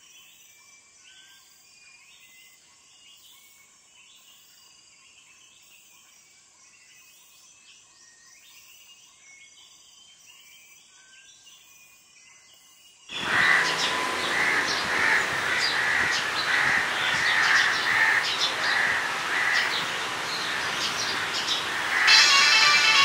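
Faint scattered bird chirps, then about 13 seconds in a sudden, much louder chorus of harsh bird calls that pulse about twice a second over a noisy background.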